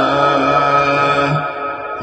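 A man's voice in melodic Quran recitation (tilawat), holding out the long final vowel of 'wa duhaha' on a steady pitch. It trails off about a second and a half in.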